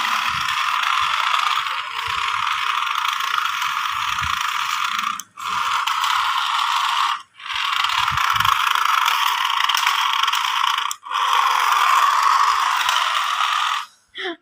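A toy remote-control car's small electric motor and gears whirring steadily as it is driven, stopping for a moment three times as the throttle is let go.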